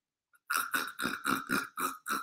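A man laughing under his breath: a quick run of short, breathy huffs, about five a second, starting about half a second in.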